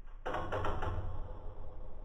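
A short percussive music sting: a quick flurry of sharp, knocking strikes about a quarter second in, ringing out and fading over the next second and a half.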